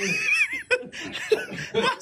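Men laughing: a high, wavering laugh at the start that breaks up into shorter chuckles.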